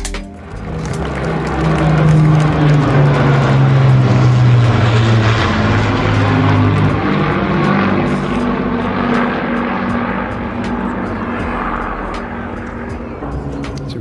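Avro Lancaster bomber with a Spitfire and a Hawker Hurricane in formation flying past, the drone of their Rolls-Royce Merlin piston engines swelling in about a second in, staying loud for several seconds, then slowly fading.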